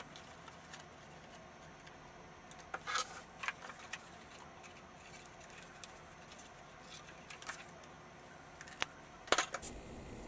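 Faint snipping of scissors cutting paper, with paper rustling: a cluster of short snips about three seconds in, then a few scattered sharp clicks near the end.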